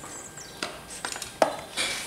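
Small plastic wiring connectors and a hall sensor tester being handled and plugged together: a series of short sharp clicks and knocks, the loudest about one and a half seconds in.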